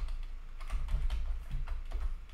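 Computer keyboard typing: a quick, irregular run of keystrokes over a low steady hum.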